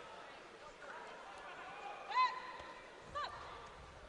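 Faint boxing-arena background noise, with two short shouted calls, the louder about two seconds in and a weaker one about a second later.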